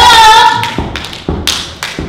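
A long held note from a voice, probably singing, wavering slightly, breaks off under a few loud, uneven thumps.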